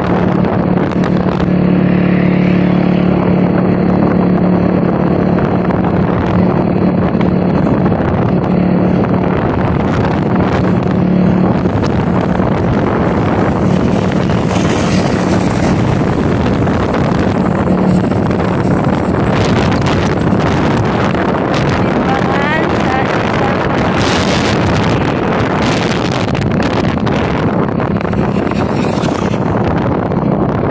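Vehicle engine running steadily while travelling along a road, with wind buffeting the microphone. A low engine hum stands out most in the first dozen seconds.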